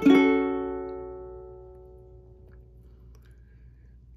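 A single F-sharp minor chord (fingered 2-1-2-0) strummed once on a ukulele, ringing out and fading away over about three seconds.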